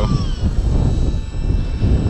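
Gusty wind rumbling on the microphone, rising and falling, with a faint steady high-pitched whine above it.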